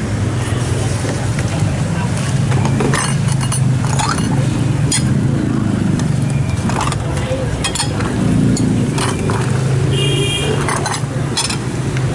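Metal utensils clinking against a steel stockpot and serving tray as soup is ladled and served, a scattered series of sharp clinks over a steady low traffic hum and background voices.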